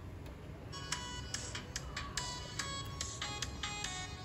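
Recorded music played back from a smartphone through an Onkyo DAC-1000 decoder, starting about a second in: a bright melody of sharply struck notes over a low room hum.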